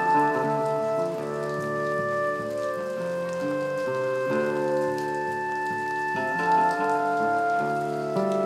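Solo acoustic guitar fingerpicked in an instrumental passage, ringing chords that change every second or two.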